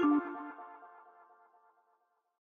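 Electronic music jingle of a TV show's logo sting, ending on a held last note that dies away to silence about a second and a half in.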